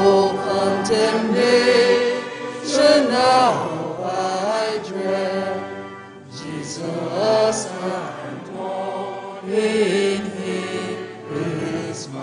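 Sung chant over sustained organ chords, in two long phrases with a short break about six seconds in.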